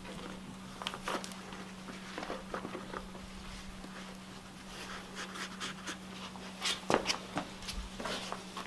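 Round bootlaces on a leather work boot being tied by hand: soft rustles and small ticks as the laces are pulled and looped, with a few sharper taps about seven seconds in. A steady low hum runs underneath.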